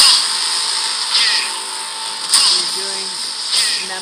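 Film trailer sound effects playing back: a steady harsh, buzzing noise with sharp swells about every second and a bit, the loudest right at the start.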